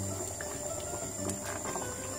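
Thick tomato sauce bubbling in a stainless steel pot while a wooden spoon stirs it, over a low steady hum.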